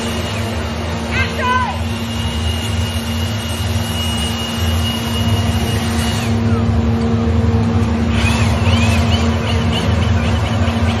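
Steady machine hum with a high, thin whine that slides down and stops about six seconds in.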